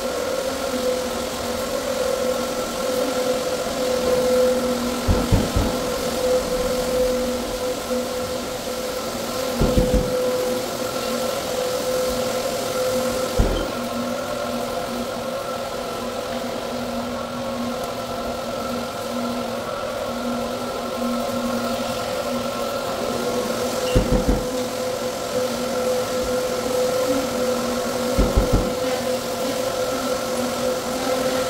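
Rotary floor machine running steadily with a sanding screen on bare, freshly ground concrete: a constant motor hum over a rough rushing noise, with a few short low thumps along the way.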